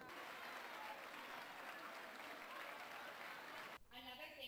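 Audience applauding: steady clapping that cuts off abruptly just before the end.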